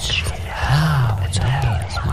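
Whispering gossip: indistinct hushed voices whispering over one another, full of hissing s-sounds, with a low murmured voice rising and falling about halfway through.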